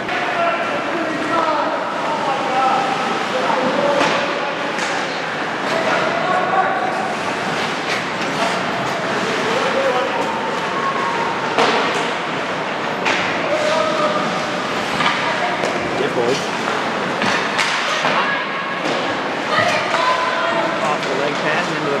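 Ice hockey game in an indoor rink: voices of players and spectators calling out throughout, with several sharp knocks of pucks, sticks or bodies against the boards.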